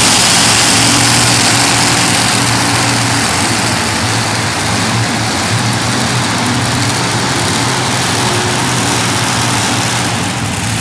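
Multi-engine modified pulling tractor with supercharged engines idling steadily as it rolls slowly onto the track, its level easing a little over the first few seconds and then holding.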